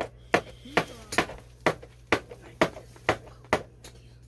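Stack of Panini Prizm chrome baseball cards being flipped through by hand. Each card snaps or clicks as it comes off the stack, about two clicks a second.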